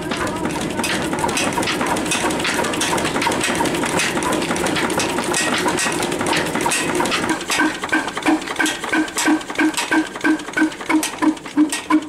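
Old Blackstone stationary diesel engine running, with sharp metal clinks from a wrench working on its exhaust stack. About halfway through, the exhaust settles into distinct, evenly spaced beats, about three a second.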